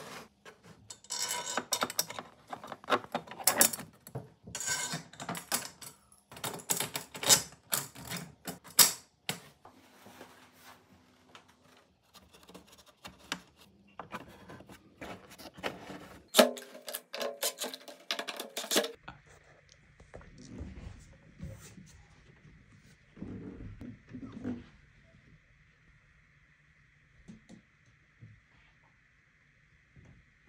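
Rapid clicks, taps and metallic rattles of a drum's metal hoop and hardware being handled and fitted, mixed with workshop handling of wood. About two-thirds through it gives way to a much quieter stretch with a faint steady high whine and a few soft knocks.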